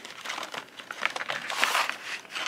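Crinkling of sheet-mask sachets and rustling of a cardboard box as a mask packet is pulled out by hand, a little louder in the second half.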